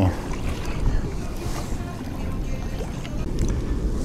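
Steady wind noise on the microphone, heaviest in the lows, with small waves lapping at the water's edge.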